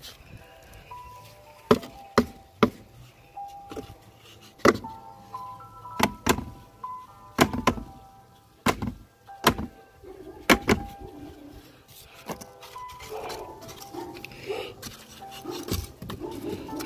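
Cardboard egg crate knocked repeatedly against the rim of a plastic bin to shake dubia roaches off it: about a dozen sharp knocks, often in quick pairs. A faint tune plays in the background.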